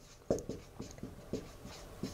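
Dry-erase marker writing on a whiteboard in a run of short, separate strokes.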